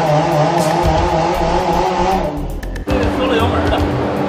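A Mercedes performance hatchback's engine held at high revs during a half-throttle pull on a chassis dyno, then the throttle comes off and the sound drops away about two seconds in, cutting off abruptly a little later. The power keeps being pulled back at the top of the pull, which the tuner blames on a torque limit written into the car's ECU tune.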